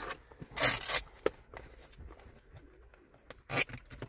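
Two short rips of hook-and-loop straps being pulled open, about half a second in and again near the end, with a single sharp click between: the straps of inline skates or skating pads being undone.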